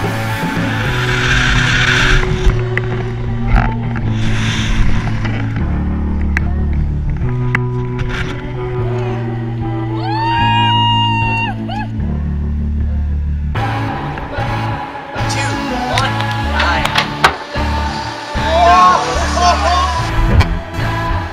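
Background music with a bass line that moves in steady steps, and a voice over it around the middle.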